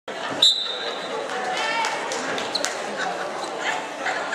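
Referee's whistle blown once, short and high, starting the wrestling bout, followed by shouting voices in a large echoing gym and a few sharp slaps and knocks from the wrestlers tying up.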